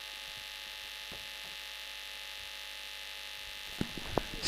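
Steady electrical hum with a faint even hiss, unchanging throughout, with a faint tick near the end.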